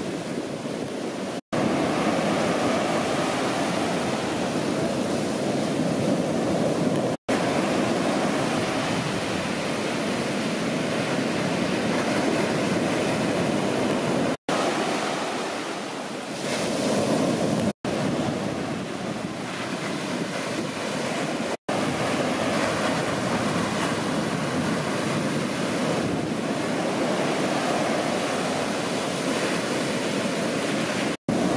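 Ocean surf breaking, with wind on the microphone: a steady rush of wave noise that cuts out for an instant five times where the footage is spliced.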